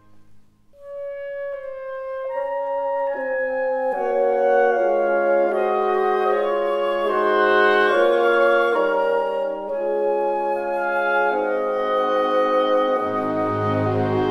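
Slow instrumental background music with long held notes: a single note enters about a second in and builds into layered, slowly changing chords.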